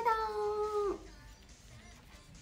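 A young woman's high-pitched, drawn-out 'arigatou' held for about a second, then faint background music.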